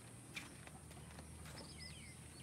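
Quiet background with a single soft tap about a third of a second in and a few faint bird chirps near the end.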